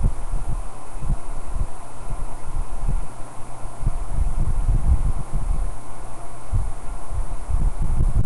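Low, irregular rumbling and soft bumps over a steady low hum, as from handling noise picked up by a webcam's microphone.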